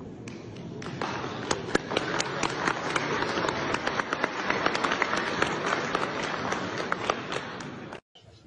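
Crowd applauding: many hands clapping in a dense patter that swells about a second in.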